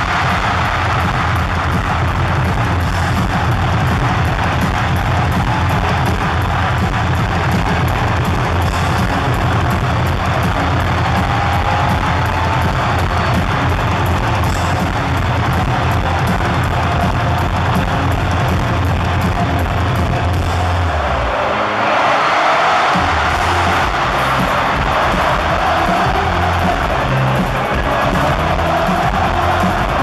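Live rock band playing loud: drums, bass and electric guitars, heard from within an arena crowd. The deep bass drops away for a moment about twenty-one seconds in, then comes back.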